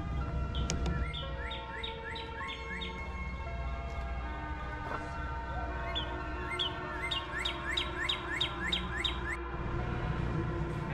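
A songbird singing two runs of quick, repeated slurred whistles, about two a second, over soft background music with held chords.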